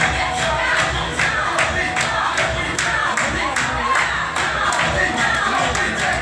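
Loud dance music with a steady beat, and an audience shouting and cheering over it.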